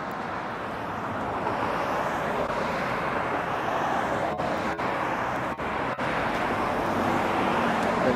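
Steady road traffic noise from cars passing on a street, slowly swelling, with a few brief dropouts around the middle.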